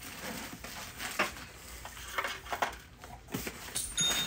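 Rustling and crinkling of packaging as items are pressed into a cardboard shipping box, with a few light knocks as the box is handled and its flaps folded.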